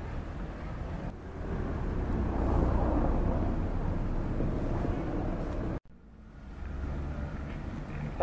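Outdoor street background noise: a steady low rumble like distant traffic that swells about two to three seconds in, cuts out abruptly about six seconds in, then fades back up.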